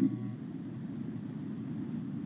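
A pause with no speech, leaving only low, steady background noise picked up by a video-call microphone.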